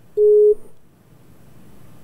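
A single short electronic beep: one steady, mid-pitched tone lasting under half a second, followed by faint background hiss.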